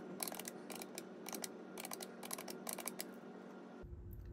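Keys of a plastic desktop calculator being tapped, a quick, irregular run of light clicks.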